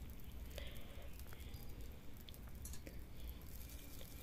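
Faint sizzle of semolina cakes shallow-frying in oil in a nonstick pan, with a few light clicks of a steel spatula against the pan as the cakes are turned.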